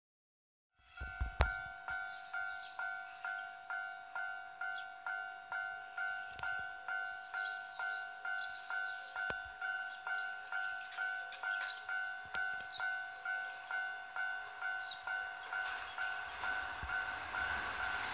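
Railway level-crossing warning bell ringing, a repeated two-tone electronic ding at about two strikes a second, starting about a second in and running on steadily.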